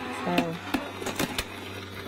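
Electric die-cutting machine (Crafter's Companion Gemini Junior) running with a low steady hum as the die and cutting plates pass through, with a few light knocks in the middle.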